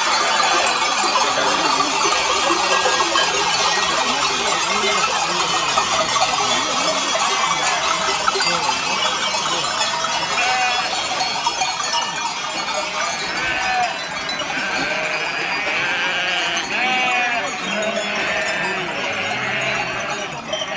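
A large flock of sheep on the move, their neck bells clanking continuously, with many sheep bleating; the bleats come more often in the second half.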